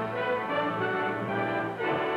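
Orchestral theme music led by brass, with held chords that move to a new chord near the end.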